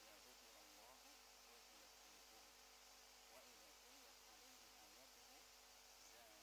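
Near silence: faint steady room tone and hiss.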